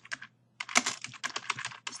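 Typing on a computer keyboard: a quick run of keystrokes starting about half a second in, as a line of a message is typed out.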